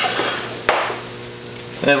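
Coolant siphoning out of a radiator through a clear hose into a plastic bin, a soft hiss of running liquid that fades, with one sharp knock about two-thirds of a second in.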